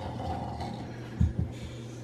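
Two short, low thumps about a fifth of a second apart, a little past the middle, as bare feet step onto a digital bathroom scale on a tiled floor, over a steady low hum.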